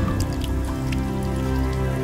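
Background music with sustained chords over a low bass, with a few short water-drop sound effects scattered through it.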